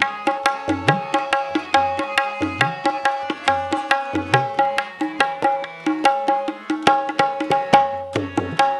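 Tabla playing a quick, steady rhythm of sharp strokes, with the bass drum's pitch gliding upward on its low strokes, over sustained harmonium notes.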